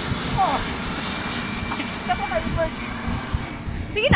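Jet airliner flying low overhead: a steady engine rumble that eases slightly toward the end.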